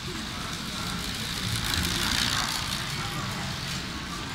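Track bicycles passing close by on a concrete velodrome: a swelling whoosh of tyres that peaks about two seconds in, over a low murmur in the hall.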